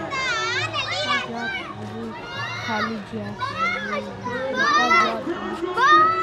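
Children's voices chattering and calling out, high-pitched and overlapping, over a low steady hum.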